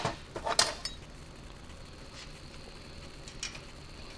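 A few light metallic clinks from a wrench and screwdriver being handled and fitted onto a valve rocker's lock nut and adjusting screw, mostly in the first second, then a couple of faint ticks. They come as the valve clearance on the aircraft engine is about to be reset.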